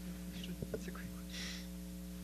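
Steady electrical mains hum through the microphone system, with faint whispering and a short breathy hiss about one and a half seconds in.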